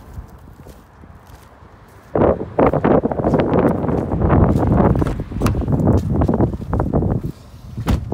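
Footsteps crunching on loose gravel, loud and irregular, starting about two seconds in and stopping shortly before the end, followed by a single sharp knock.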